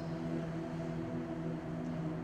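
Electronic keyboard holding a soft sustained chord, its tones steady and unchanging.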